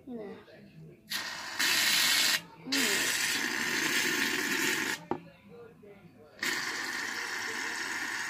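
Aerosol can of shaving cream spraying foam in three long hisses, each starting and stopping suddenly: about a second in, again from under three seconds to five seconds, and from about six and a half seconds on.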